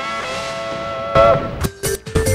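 Closing theme music ending on a held guitar chord. A loud accent comes a little past a second in, and short sharp hits follow near the end.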